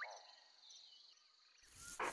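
Near silence: faint forest ambience of insect and bird chirps cuts off in the first moment, and a low rumble starts to rise just before the end.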